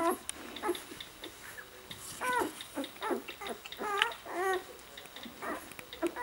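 Newborn puppies squeaking and whimpering while nursing: a string of short, high calls that rise and fall in pitch, coming every second or so.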